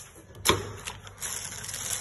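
A sharp click about half a second in, then plastic wrapping crinkling and rustling as packaged cables are handled.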